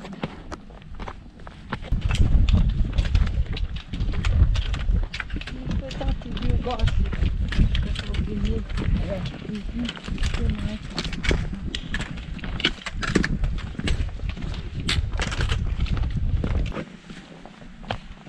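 Footsteps and the metal tips of trekking poles clicking and knocking irregularly on a rocky trail. A low rumble runs under them from about two seconds in until near the end.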